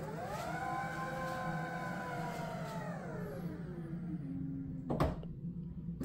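Toyota bZ4X power liftgate closing: its motor whines, rising in pitch as it starts, holding steady, then sliding down to a lower hum as the gate slows. A thud about five seconds in as the gate latches shut.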